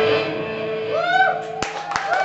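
A rock band's last chord ringing out and fading as the song ends, then audience members starting to cheer and clap about a second in, with a few sharp single claps near the end.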